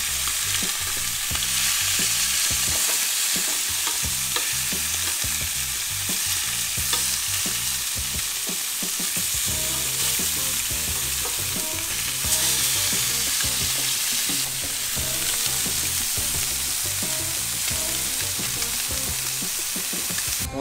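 Bullseye snakehead fillets sizzling steadily as they sear in hot oil in a non-stick pan, with light clicks of metal tongs as the pieces are turned.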